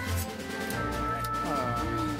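Music: held instrumental notes over a steady bass, with a pitched line sliding downward a little past the middle.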